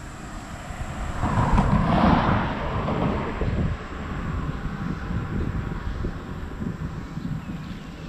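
A vehicle passing by, its road noise swelling and fading over about three seconds, followed by a steady low rumble of wind on the microphone.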